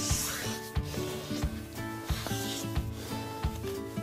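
Background music with a steady beat, over the scratchy rubbing of a pen scribbling on paper at the start and again around the middle.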